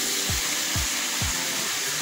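Chicken, celery and mushrooms sizzling in a frying pan, a steady hiss. A background music beat thuds low about twice a second.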